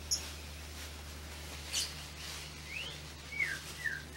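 Scattered short bird chirps: a sharp high chip at the start and another just before two seconds in, then a short run of quick descending whistled notes in the last second or so. A steady low hum runs underneath.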